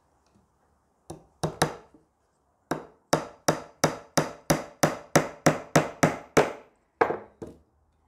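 Claw hammer driving a small nail through a wooden beehive frame's bottom bar into the side bar: three taps to start the nail, then a quick, even run of about fifteen blows, four to five a second, and two last blows near the end.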